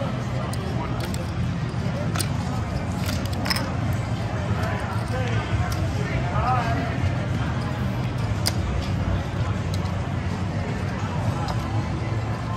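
Steady casino-floor din with background voices, and a few sharp clicks of casino chips being set down and stacked on the table.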